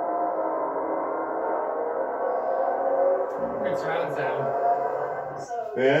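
A sustained ringing tone made of several steady pitches, fading away about five seconds in, with a couple of short voices over it.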